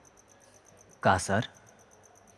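Crickets chirping steadily in the background, a fast, even high-pitched pulse. A man's voice cuts in briefly with a short word about a second in.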